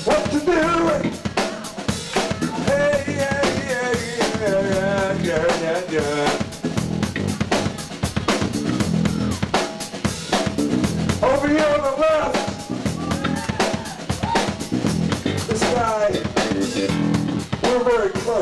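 Live blues-rock trio playing: a Stratocaster-style electric guitar takes a lead with bent and wavering notes over a steady drum-kit beat and electric bass.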